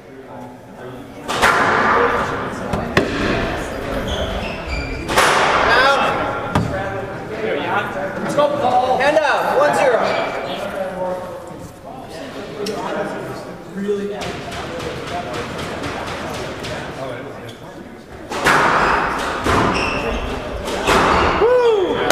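A squash rally: the ball is struck by rackets and smacks off the walls of a glass-backed court in a run of sharp knocks, with shoes squeaking on the wooden floor.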